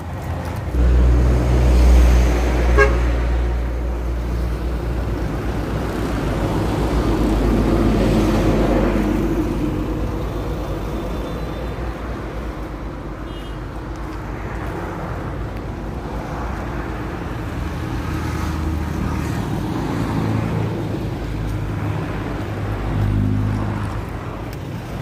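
Motor vehicle traffic: a steady, loud engine and road rumble, with a couple of brief horn toots.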